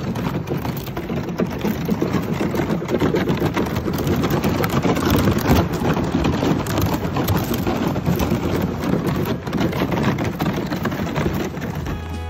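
Thin skim ice cracking and crunching against a kayak's hull as the boat pushes through it: a continuous crackle of many small clicks and breaks.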